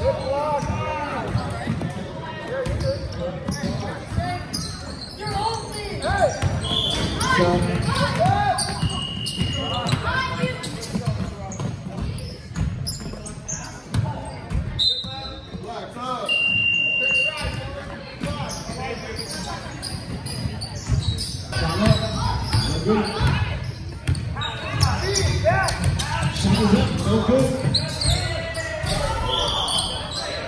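Basketballs bouncing on a hardwood gym floor during a game, with a few brief high squeaks from sneakers, and players' and spectators' voices echoing in the hall.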